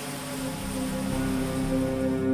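Steady drone of an E-2 Hawkeye's turboprop engines running on a carrier deck, mixed with sustained background music; the sound slowly grows louder.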